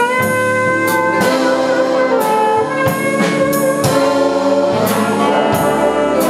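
Big jazz band playing: saxophones, trumpets and trombones holding sustained chords over an evenly spaced cymbal beat.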